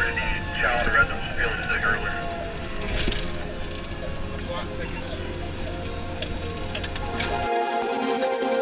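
Inside a fire apparatus cab on the move: a steady engine and road rumble, with a siren's falling wail coming through over the first few seconds, and scattered clicks and rattles as gear and straps are handled. The cab sound cuts off near the end and electronic music takes over.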